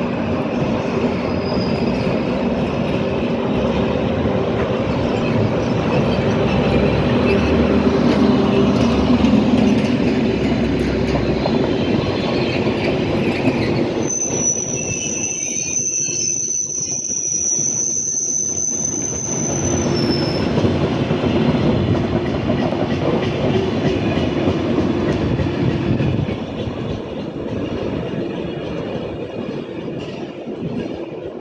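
A Rhaetian Railway Ge 4/4 II electric locomotive and its Glacier Express panorama coaches roll slowly past, with a steady rumble of wheels on rail. In the middle, a high wheel squeal is held for about six seconds as the coaches go through the station curves. The sound fades near the end as the train pulls away.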